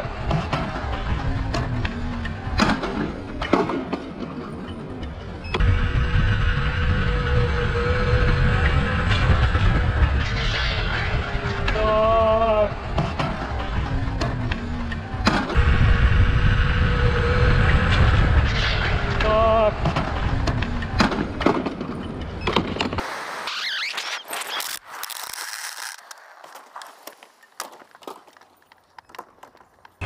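Wind rumble on the microphone from riding at speed, with short pitched tones recurring every several seconds over it. About three-quarters of the way through the low rumble stops, leaving thinner, higher sounds that fade.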